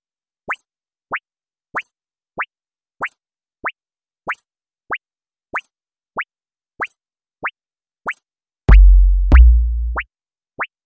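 Instrumental stretch of a sparse jerk-style hip-hop beat: a short rising synth 'bloop' about every 0.6 s, with a brief hi-hat hiss on every other one. A deep, loud bass boom comes in near the end.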